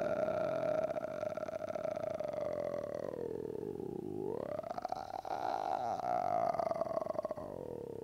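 A man's voice in free vocal fry: a low, creaky rattle of the vocal folds held as one long sound, its vowel colour shifting about halfway through. It is the exercise used to bring the vocal cords together and retrain their closure.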